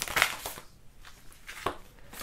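Oracle cards being handled as one is drawn from the deck: a few brief rustles and taps, the clearest at the start and again near the end.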